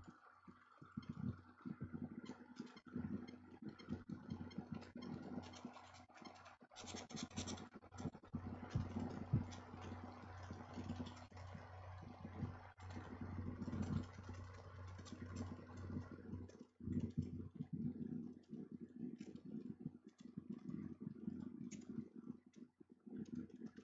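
A steady low mechanical hum, like a motor running, fills the room, with scattered short clicks from a computer mouse as folders are opened and scrolled. The hum is strongest in the middle.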